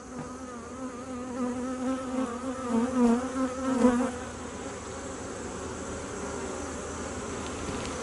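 Honeybees buzzing around a frame of brood lifted from an opened hive, a wavering hum that is louder for the first four seconds and then settles to a softer steady drone. The colony is a little testy at being disturbed.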